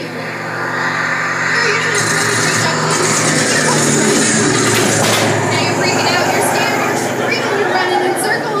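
Show sound effect of warplanes flying overhead: a loud engine drone that swells over the first couple of seconds and then stays loud.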